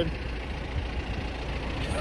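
Vehicle engine idling, a steady low rumble.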